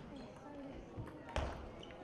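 Table tennis ball clicking off paddle and table during a rally, the sharpest click about one and a half seconds in.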